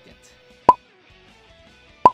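A single short, sharp pop about two-thirds of a second in: the Dragon Ball Z Abridged 'instant transmission' teleport sound effect, edited in as a joke. It plays over faint background music.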